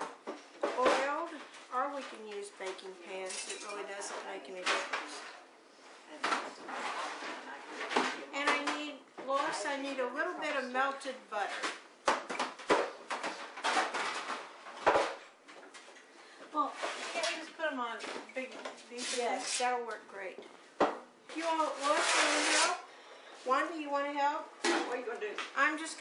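Voices talking indistinctly in a small kitchen while dishes and cutlery clink at the sink, with a few sharp knocks in the middle.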